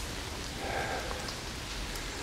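Steady rain falling, an even hiss with no other distinct sound.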